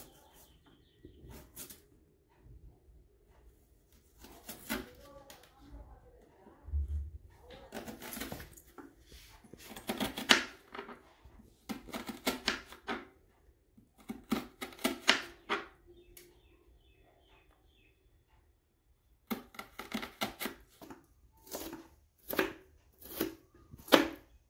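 Kitchen knife dicing a red onion on a wooden cutting board: quick runs of chops with short pauses between them, and a quiet stretch of a few seconds past the middle.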